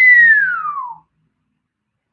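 A man whistling one long note that leaps up and then slides down in pitch, stopping about a second in.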